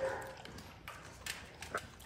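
A dog close to the microphone: a brief whine right at the start, then a few scattered light clicks and knocks.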